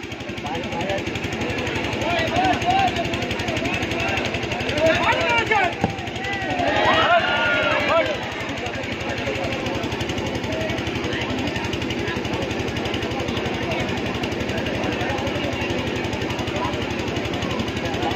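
Crowd of spectators chattering, with louder shouting about five and seven seconds in, over a steady, rapid throbbing noise that runs throughout.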